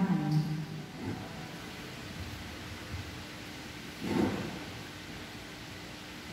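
Quiet church room tone with a faint steady hum, after a woman's voice trails off at the very start; one brief soft noise about four seconds in.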